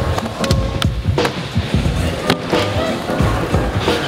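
Music with a beat over a skateboard rolling, its wheels running on the riding surface with sharp clacks from the board.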